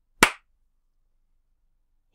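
A single sharp hand clap, about a quarter second in.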